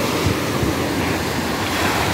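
Ocean surf breaking and washing up a sandy beach: a steady rush of waves.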